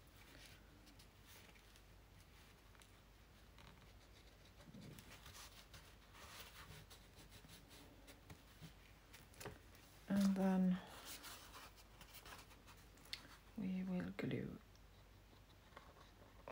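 Faint rubbing and scratching of hands pressing paper down onto a glued surface, with two short murmured voice sounds, about ten and fourteen seconds in.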